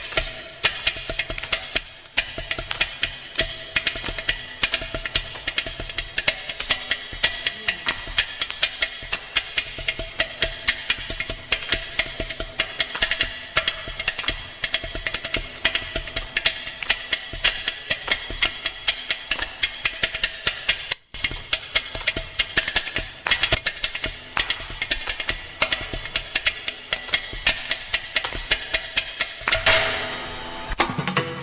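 Carnatic percussion playing, mridangam with ghatam and morsing, a fast dense run of strokes over a steady twanging pitch.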